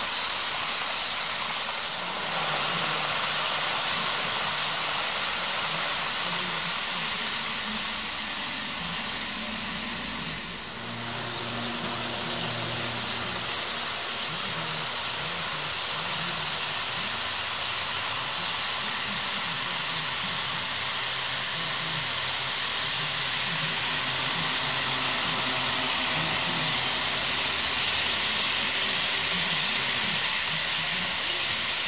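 HO scale model trains running past on sectional track: a steady rush of small metal wheels rolling on the rails, with a low wavering hum underneath. The sound dips briefly about ten seconds in, then carries on as the freight passes.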